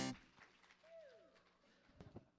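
A live band's final note cuts off and dies away in a room, followed by near silence. About a second in there is one faint falling glide in pitch.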